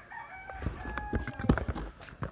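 A rooster crowing faintly, with soft knocks and rustles of a cardboard box being handled.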